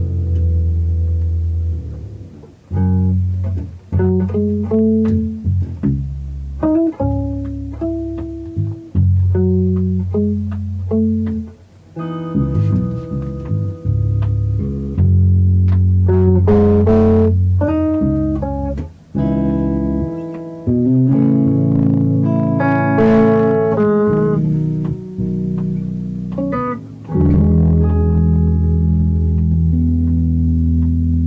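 Electric guitar and electric bass duo playing jazz live: a guitar melody and chords over long, held bass notes, with a few short pauses between phrases.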